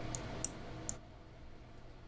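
Three light computer mouse clicks within about the first second, over a faint steady hum of background noise.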